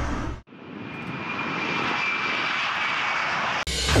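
A steady rushing noise with a faint high whine in it, like an aircraft engine. It comes in after a brief silence about half a second in, swells, holds, and cuts off sharply shortly before the end, when a beat starts again.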